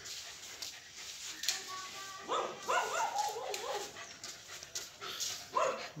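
A dog giving a run of short, pitched cries a little past two seconds in, and one more shortly before the end.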